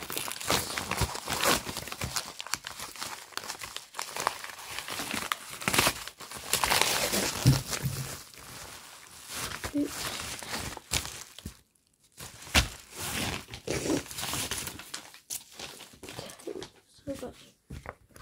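Packaging being handled and torn open by hand: crinkling and tearing of wrapping, with scattered rustles and clicks and a brief pause about two-thirds of the way through.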